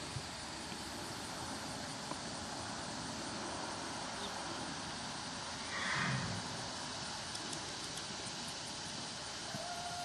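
Steady outdoor background noise with a few faint hoofbeats from a Tennessee walking horse under saddle. A short, louder sound about six seconds in.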